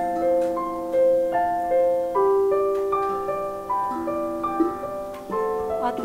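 Digital piano playing a slow improvised melody of single notes over held lower notes. A child's mallet strikes on a steel tongue drum join in.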